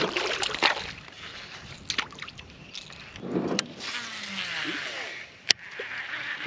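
A small largemouth bass dropped back into the lake, hitting the water with a splash right at the start. After it, quieter water and handling noise with a few sharp clicks, the loudest near the end.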